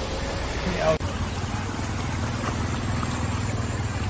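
A motor vehicle's engine idling as a steady, evenly pulsing low rumble, with the sound breaking off sharply about a second in.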